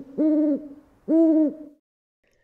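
A short note, then two steady hoots about a second apart, each lasting about a third of a second and bending down at the end.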